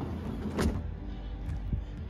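Sectional garage door closing: a steady mechanical running sound from the door travelling down its tracks, with a sharp click about half a second in.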